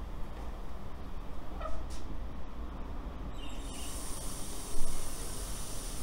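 An outdoor tap is opened about two-thirds of the way in: a brief squeak, then a steady high hiss of water rushing into the garden hose that feeds the test tube.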